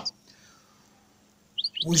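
A European goldfinch gives two quick, high chirps near the end of an otherwise quiet stretch.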